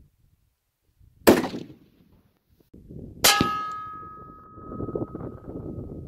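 A single rifle shot, then about two seconds later a bullet striking a metal target with a clang that rings on in a clear tone for about three seconds.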